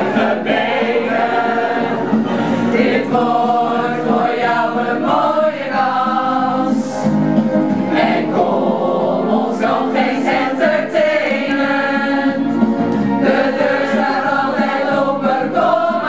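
A group of mostly women's voices singing a song together from song sheets.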